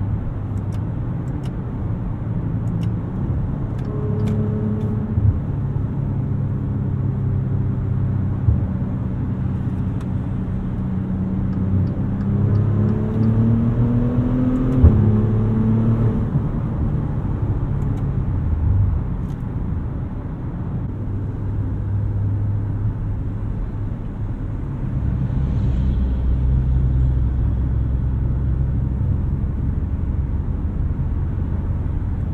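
The 2020 Maserati Levante GranSport's twin-turbo V6 is heard from the driver's seat through in-ear binaural microphones. It runs steadily under light load, then its note climbs for a few seconds about halfway through and drops back at a sharp click, as with an upshift. Near the end there is a deeper low hum.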